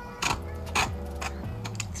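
Sharp clicks and crinkles of small plastic packaging as a contact lens vial is handled and opened, two distinct clicks in the first second followed by lighter ticks. Soft background music plays underneath.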